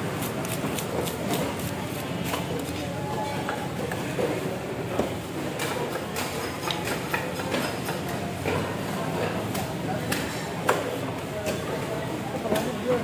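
A large fish being scaled with a plastic scaler on a wooden chopping block: quick scraping strokes, about four a second, in the first second or so, then scattered scrapes and knocks against the block, one sharper knock near the end.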